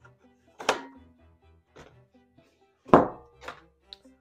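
Two knocks of carbon steel fry pans handled on a wooden tabletop, one under a second in and a louder one about three seconds in that rings briefly, over soft background music.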